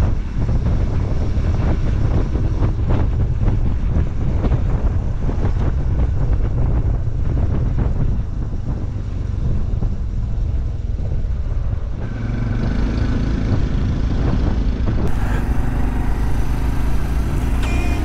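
Riding noise from a moving motorcycle: a steady low rumble of engine and wind on the microphone. About two-thirds of the way through, a steady engine hum comes through more clearly.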